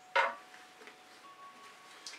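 A paint-covered silicone spatula wiped off on a silicone mat: one short wet scrape about a quarter second in.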